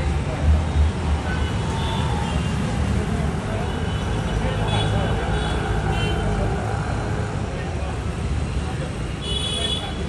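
Outdoor street ambience: a steady rumble of road traffic with a murmur of voices, and a brief high-pitched tone near the end.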